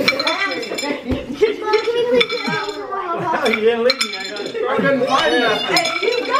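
Dice rattling and clinking as they are rolled again and again into a glass dish, over several people talking at once.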